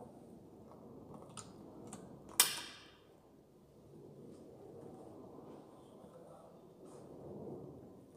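Handling noise of an air rifle being settled on a bench rest: a few faint clicks, then one sharp knock with a short ring about two and a half seconds in, over quiet room noise.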